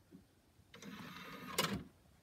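Samsung Blu-ray player's disc tray closing: its motor whirs for about a second and the tray shuts with a click.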